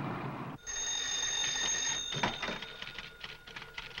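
Telephone bell ringing, one ring of about a second and a half starting about half a second in, followed by faint clicks.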